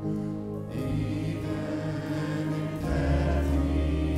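Grand piano playing a hymn, joined about a second in by a choir singing with the band, and a deep bass coming in near the end.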